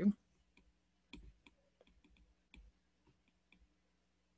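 Faint, irregular clicks and taps of a stylus tip on an iPad Pro's glass screen while handwriting, about a dozen spread unevenly over the few seconds.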